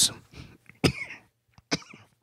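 A man coughing: two short, sharp coughs about a second apart, between phrases of speech.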